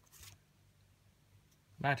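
Pokémon trading cards sliding against each other in the hand: two brief rustles right at the start, then quiet. A voice starts near the end.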